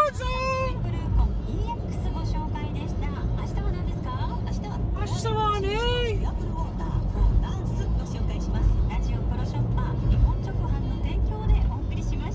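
Steady low road and engine rumble inside a car's cabin at expressway speed, with music and a voice heard briefly over it, once at the start and again about five seconds in.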